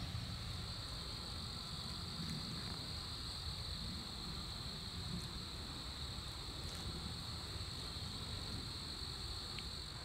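A steady, high-pitched chorus of insects trilling without a break, over a low rumble.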